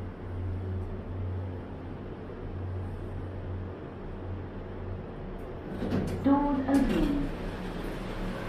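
OTIS 2000 hydraulic lift car with a steady low hum as it arrives and settles at the floor. About six seconds in come a few sharp clicks and a louder rumble as the sliding doors open.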